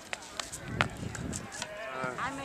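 Rotational shot put throw on a concrete circle: a few sharp shoe clicks and scuffs, the loudest a little under a second in, under a low vocal grunt around the release.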